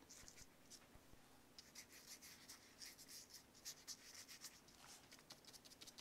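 Faint scratching of an old paintbrush's bristles dabbing and stroking on paper, many short strokes in quick succession.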